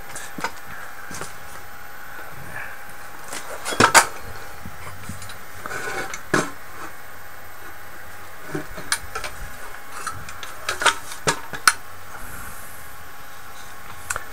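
Scattered knocks and clinks of an aluminium drive assembly being handled and turned over on a wooden board, the loudest about four seconds in and a quick group of them around eleven seconds.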